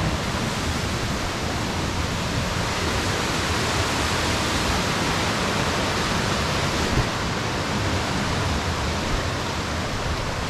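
Steady rush of a mountain creek's whitewater cascading over rocks below the trail.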